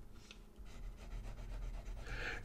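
Fountain pen nib scratching faintly on paper in short strokes, hatching in an ink swatch.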